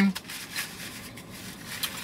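Faint handling and eating noises: soft rustling with a few light clicks scattered through, as food and a paper napkin are handled while chewing.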